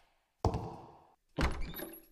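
Two heavy thuds about a second apart, each with an echoing tail.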